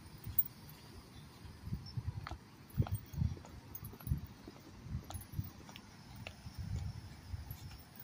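Footsteps of a person walking across grass and dirt, soft low thuds coming about one or two a second.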